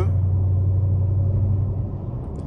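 Dodge Hellcat's supercharged V8 with aftermarket headers, heard from inside the cabin, holding a steady low exhaust drone while cruising at highway speed, easing off slightly near the end.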